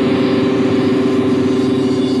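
Live rock band holding a sustained distorted electric guitar chord over a cymbal wash, a steady loud drone as the instrumental rings out at its end.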